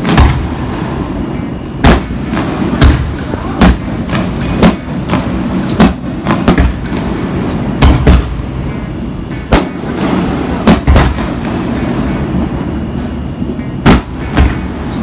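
Aerial fireworks bursting overhead: a string of sharp bangs at uneven intervals, about one a second, over a steady din.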